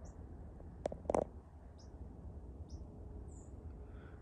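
Faint, scattered high bird chirps, a few short calls spread out, over a low steady background rumble, with two sharp clicks about a second in.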